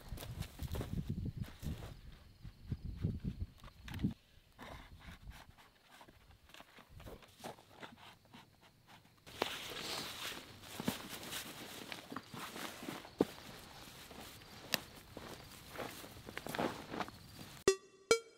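Faint, irregular footsteps and rustling in a crop-stubble field. From about nine seconds in, a steadier rustle with scattered crackles as stubble and leafy plants are handled around a layout blind.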